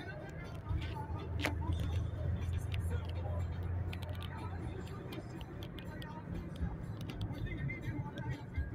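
Inside a moving car: steady low drone of the engine and tyres on the road, easing a little about halfway through, with scattered light clicks and rattles from the cabin.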